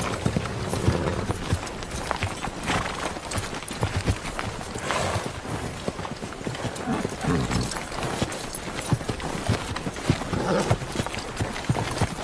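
Horses' hooves clip-clopping in a steady run of irregular hoof strikes as a mounted column rides past, over a crowd's ambient murmur, from a TV drama's soundtrack.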